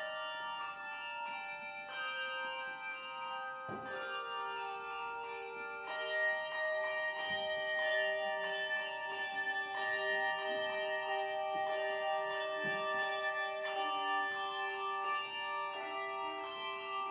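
Handbell choir ringing a piece: chords of sustained ringing bell tones that change every second or two, with quicker, denser strikes from about six seconds in.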